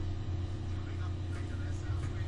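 Room tone: a steady low hum under a faint hiss, with nothing else happening.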